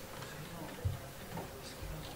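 Faint room sound of a meeting hall during a pause: scattered low murmurs and small movement noises, with one soft thump a little under a second in.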